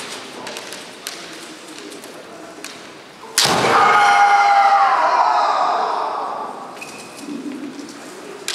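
Kendo bout: light clacks of bamboo shinai early on, then about three seconds in a sharp strike followed at once by a long, loud kiai shout. The shout holds one high pitch that sags slightly as it fades over about three seconds.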